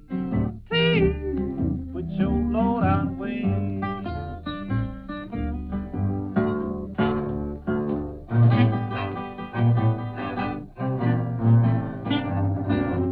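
Instrumental blues passage: a lead melody line with sliding, bent notes over a plucked bass and guitar accompaniment.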